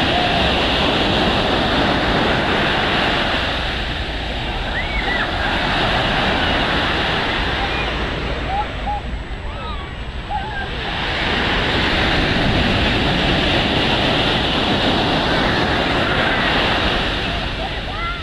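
Ocean surf breaking and washing up the shore, a steady rushing that eases briefly around the middle before swelling again.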